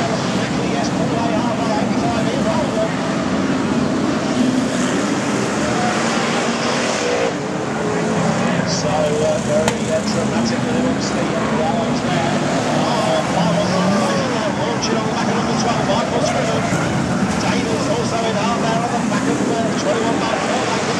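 Several BriSCA F1 stock car V8 engines racing round the oval, a continuous loud wash of engine noise whose pitch keeps rising and falling as the cars accelerate and lift. Voices are mixed in with the engines.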